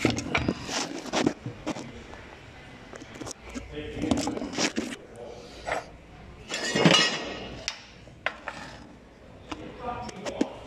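Workshop clatter: scattered clinks and knocks of metal tools and parts, with indistinct voices and a louder clatter about seven seconds in.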